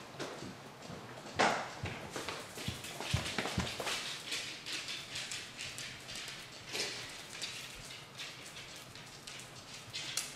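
Pet skunk's claws clicking and scrabbling on a tile floor as it scampers and slides, with a person's footsteps among the irregular taps; one sharper knock about a second and a half in.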